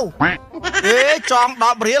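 Speech only: a man's voice talking, its pitch wavering.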